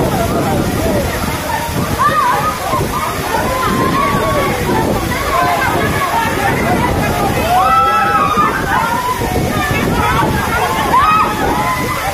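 Waterfall pouring steadily onto rock and onto people standing in it, with many overlapping voices of a crowd of bathers calling out over the water.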